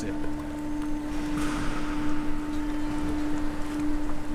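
Steady machine hum, one low unwavering tone with a fainter higher overtone, over a background haze of room noise.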